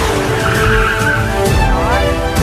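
Trailer soundtrack music with a car's tyres skidding over it.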